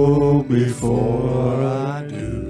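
A man singing a slow worship song in long held notes, breaking briefly about halfway before the next phrase, with acoustic guitar and electric bass underneath.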